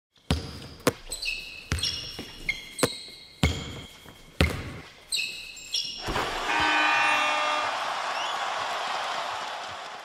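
A basketball bouncing about nine times at an uneven pace, with short high tones ringing after several bounces. About six seconds in, a long swell of noise with some tones in it takes over and fades toward the end.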